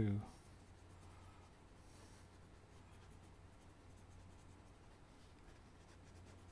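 Graphite pencil scratching faintly on paper as a drawing is sketched.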